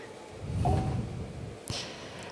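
A quiet pause in speech. A person's faint breath and a brief low hum come about half a second in, and a small click follows near the end.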